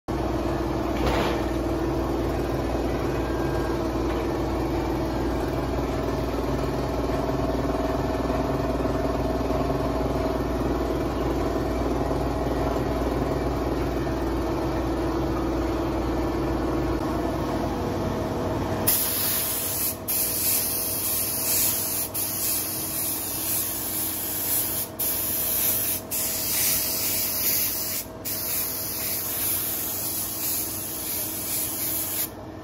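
A steady low mechanical hum. About two-thirds of the way through it gives way to a spray gun hissing as it sprays texturizing paint onto a motorcycle engine cover, in long passes broken by brief trigger releases.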